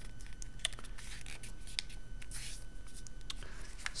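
A folded sheet of paper being pressed, creased and handled on a tabletop: faint scattered rustles and small taps.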